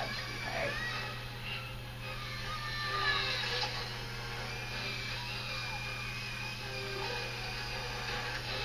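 Low-speed dental handpiece with a prophy cup running steadily as it polishes a child's teeth, with a faint steady whine. Music and voices from a television play faintly underneath.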